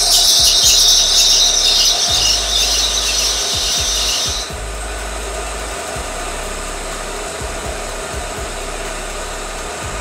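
A car engine idling, heard from inside the cabin, with a loud high squeal over it that cuts off suddenly about four and a half seconds in, leaving a steady low hum.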